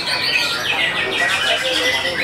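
White-rumped shama (murai batu) singing a loud, varied song with a quick trill of repeated notes about halfway through, over other contest birds singing at the same time.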